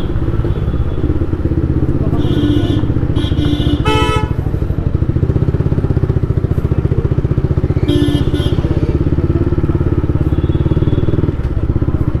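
Yamaha MT-15's single-cylinder engine running at low revs with a fast, even pulse as the bike rolls slowly. A few short horn-like beeps come over it, around two to four seconds in and again about eight seconds in.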